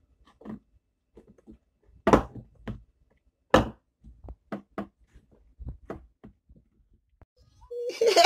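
Fufu dough being kneaded and pressed by hand in a metal pot: irregular soft thuds and knocks, with two sharper knocks about two and three and a half seconds in.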